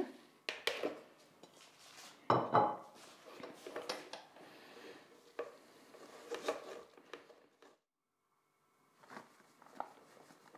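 Powdered sugar being sifted: a utensil scrapes and taps around inside a metal mesh sieve over a mixing bowl, with irregular clinks, the loudest about two seconds in.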